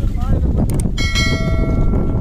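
A metal bell, as hung on a working bullock's harness, rings once about a second in, its tone ringing out and fading over most of a second, over a steady low rumble of the moving carts.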